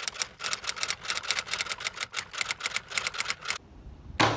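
Typewriter sound effect: a fast, even run of key clicks, about eight a second, that stops abruptly shortly before the end.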